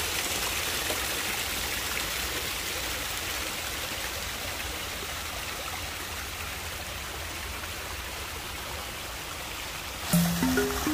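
Small man-made waterfall splashing down rockwork into a pool: a steady rush of falling water that eases off slightly towards the end.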